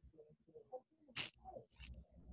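Very faint, indistinct children's voices murmuring over a video call, broken by two short hissy sounds; otherwise near silence.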